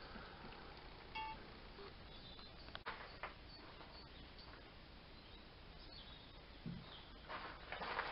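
Quiet outdoor background with faint clicks and rustles as the camera is moved, a sharp click a little under 3 s in, and a brief faint high chirp about a second in.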